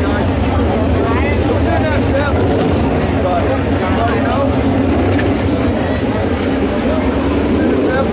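Indistinct voices chattering over a steady low engine hum. Near the end an engine's pitch rises as a pickup truck drives close past.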